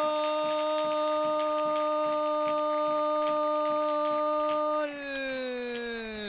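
A football commentator's long, held "gooool" goal shout on one steady pitch for about five seconds, sliding down in pitch as it ends. Faint regular ticks, about four a second, run underneath.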